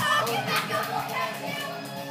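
Several girls' voices, excited and overlapping, over music playing in the background.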